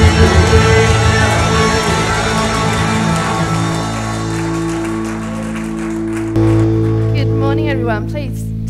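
Live church worship band with electric guitars finishing a song: the full band plays for the first few seconds, then drops back to held, ringing chords, with a new sustained chord coming in louder about six seconds in and a voice heard over it near the end.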